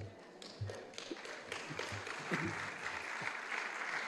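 A congregation applauding, starting thinly and swelling over the last couple of seconds, with a few soft knocks from papers being handled at the lectern microphone.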